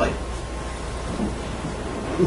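Steady room noise: an even hiss over a low hum.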